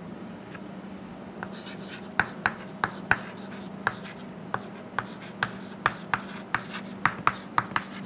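Chalk writing on a chalkboard: a string of sharp, irregular taps and short scratches as letters are written, over a steady low hum.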